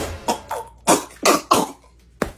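A person coughing, about four short coughs in quick succession, right after a loud yell trails off.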